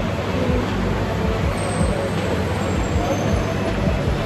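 Steady rumbling background noise of a busy gym, with faint voices mixed in.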